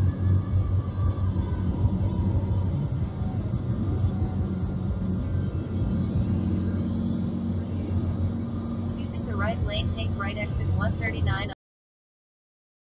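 Steady low drone of a car cabin at freeway speed, with faint voices or music from a radio under it. Near the end a few quick pitched sounds rise and fall, and the sound cuts off abruptly.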